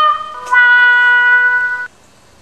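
Two sustained electronic tones, the second a step lower than the first, holding steady pitch and then cutting off suddenly near the end, like a short synthesized musical sting.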